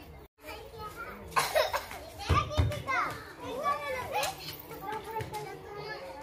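Several children's voices chattering and calling out over one another. The sound cuts out completely for a moment just after the start.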